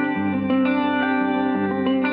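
Instrumental music: a guitar played through effects with echo, holding notes that change about every half second.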